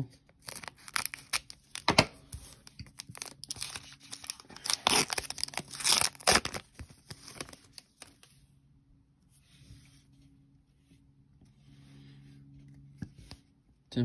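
Foil trading-card pack (NBA Hoops Premium Stock) being torn open, a run of sharp rips and crinkles over the first eight seconds or so, then dying down to faint rustles of the wrapper and cards.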